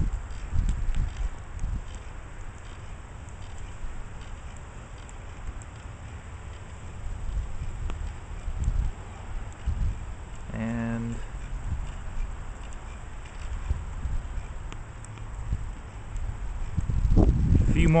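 Uneven low rumble of wind on the microphone outdoors, with no clear buzz from the tiny pager motors of the solar vibrobots.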